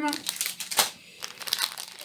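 Clear plastic packaging of craft embellishments crinkling irregularly as it is handled and put down.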